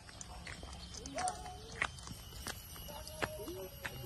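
Footsteps on a dry dirt path strewn with leaves, several sharp irregular crunches and scuffs, with faint short calls or voices in the background.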